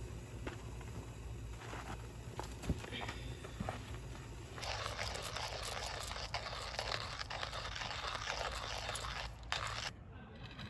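Hand-cranked manual coffee grinder crushing coffee beans: a steady gritty crunching that starts about five seconds in and stops just before the end. A few light knocks and clicks come before it.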